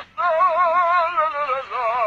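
A human voice singing long, held operatic notes with a wide vibrato, dubbed over a bird as its 'song'. There is a short break about three-quarters of the way through before the next note.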